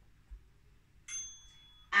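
Phone interval timer beep: a single clear high tone about a second in, held for just under a second, marking the end of a timed exercise hold.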